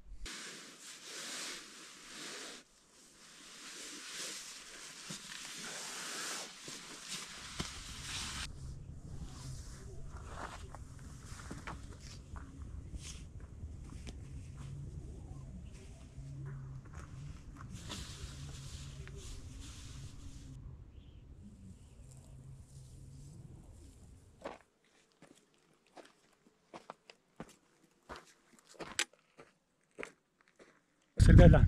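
Faint rustling and handling of camping gear on stony ground, with a steady low rumble through the middle. Near the end come a few isolated crunching steps on gravel.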